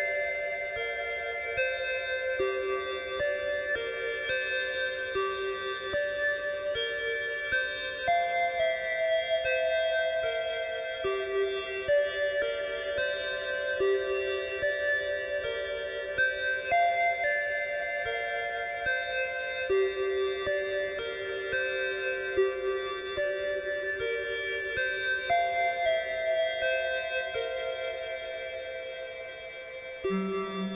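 Casio PT-31 mini keyboard played through a Zoom 9030 multi-effects unit: a slow melody of long, overlapping held notes. A phrase comes back about every eight or nine seconds, and the sound dies away near the end.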